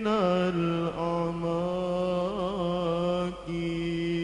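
A male solo voice singing an Arabic sholawat in a slow, melismatic style: long held notes with a wavering ornament in the middle, a brief break about three and a half seconds in, then the note sustained again.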